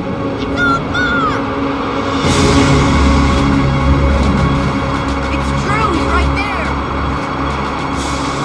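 A shouted voice, then, about two seconds in, a tornado wind sound effect swells up: a deep rumble under a broad rushing wind that carries on steadily. Dramatic music plays underneath.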